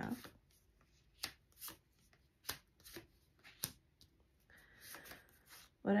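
Tarot cards being dealt from a deck onto a table: several separate sharp snaps as cards land, then a short soft rustle of cards sliding near the end.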